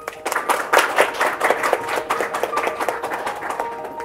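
An audience applauding, starting a moment in and easing off toward the end, with soft held music notes underneath.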